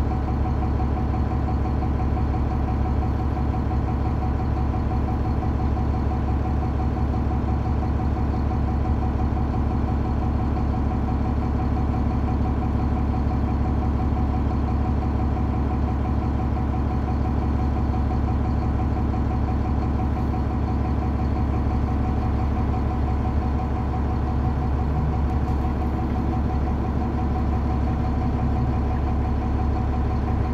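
Diesel bus engine, a Cummins ISC in a 2001 New Flyer D30LF, idling steadily, heard from inside the passenger cabin with a strong low hum.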